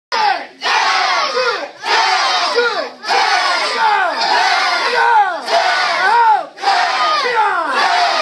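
Many voices of martial arts students shouting together in unison, a series of loud group shouts (kiai) with brief breaks between them, roughly one every second or so.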